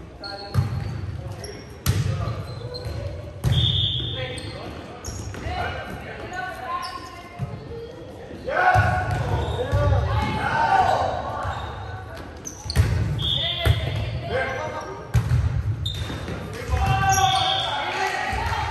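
Volleyball rally in a reverberant gymnasium: a series of sharp smacks as players hit the ball and it strikes the hardwood floor, each echoing through the hall.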